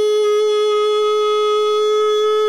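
A loud, steady electronic tone held on one unwavering pitch around G-sharp above middle C, imitating the ringing of tinnitus.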